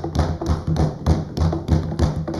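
Parliamentarians thumping on their wooden desks in a steady rhythm, about three thumps a second: the Westminster-style show of approval for a point just made.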